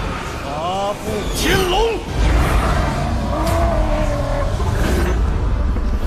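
Animated dragon's roars: short cries gliding up and down in pitch about a second in, then a long, slowly falling roar over a deep rumble.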